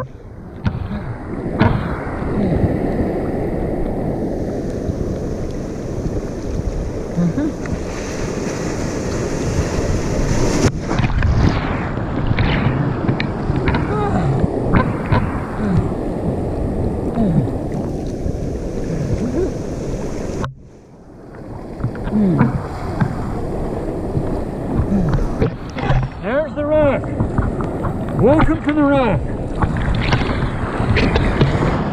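Seawater sloshing and churning around a person wading chest-deep through surf, with wind buffeting the microphone. The sound drops briefly about two-thirds of the way through, and near the end a man's voice gives a few wordless calls.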